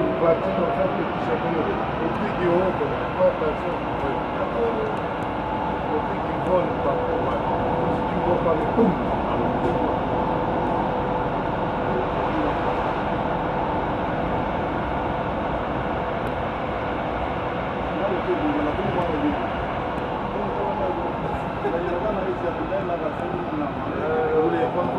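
Toulouse metro VAL 206 rubber-tyred train running through a tunnel at steady speed: a continuous rolling noise with a steady motor whine.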